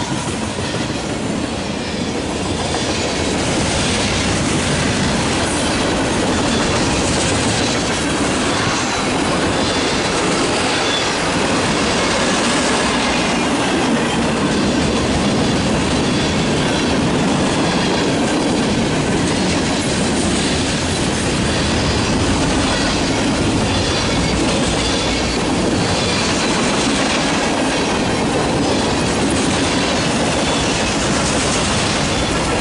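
Freight cars of a long train (covered hoppers, tank cars and an autorack) rolling past close by: a steady rumble of steel wheels on rail, with repeated clicks as the wheels cross rail joints. It builds over the first few seconds, then holds loud and even.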